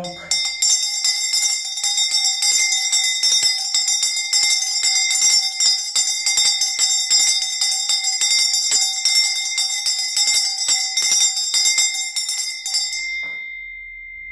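Brass hand bell with a wooden handle shaken rapidly and without pause, a fast continuous clanging of several ringing tones. It stops about a second before the end, and its highest tone rings on briefly as it dies away.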